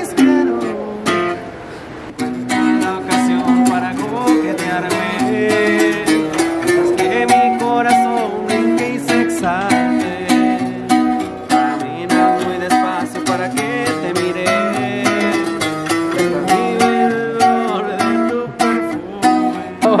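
Bajo sexto-style twelve-string guitar played solo, picking quick runs of notes and strummed chords. It pauses briefly about a second in, then plays on without a break.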